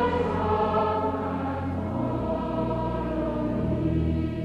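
Large choir of treble choristers and adult voices singing a hymn together, with long sustained low notes underneath; the harmony shifts to a new chord about two seconds in.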